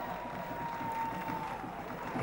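Faint, steady background ambience of a water polo match in an indoor pool hall: spectators and splashing play blending into an even hiss, with a thin steady tone that fades out about two-thirds of the way through.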